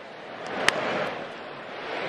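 A wooden baseball bat strikes a pitched ball once, a single sharp crack about two-thirds of a second in, putting it in play as a ground ball. Under it runs a steady ballpark crowd noise that swells a little around the hit.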